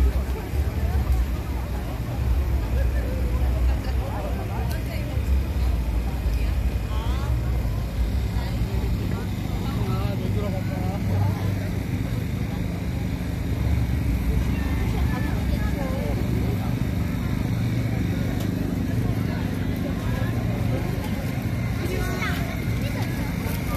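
City street ambience: a steady low rumble of traffic with the scattered, overlapping chatter of passers-by.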